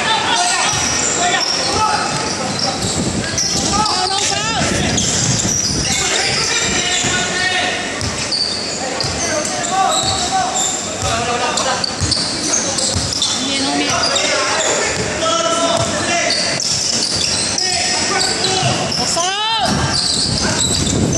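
Live basketball game in a large echoing gym: a ball bouncing on the hardwood court and sneakers squeaking, sharply about four seconds in and again near the end, under steady chatter and shouts from players and spectators.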